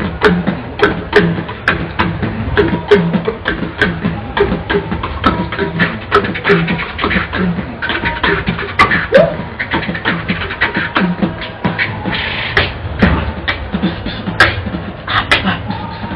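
Beatboxing: a continuous, quick beat of mouth-made kick, snare and hi-hat clicks, with short low bass notes hummed between them.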